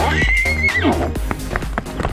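A horse whinny over upbeat electronic music with a steady beat: a high call that rises quickly, holds for about half a second, then drops steeply in pitch.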